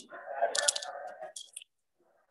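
A person's voice, short and drawn out, heard through a video call's audio. It cuts off abruptly about a second and a half in.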